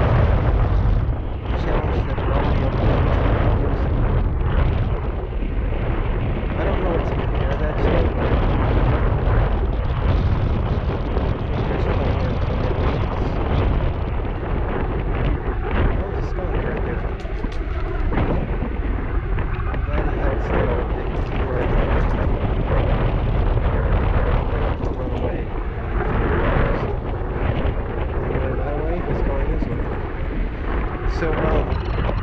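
Steady wind rumble on the microphone of a rider moving at speed on an electric unicycle, a loud deep roar mixed with road noise.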